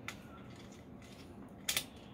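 Mostly quiet, with one short scraping click near the end as the steel panel of a Cooler Master HAF X PC case is handled.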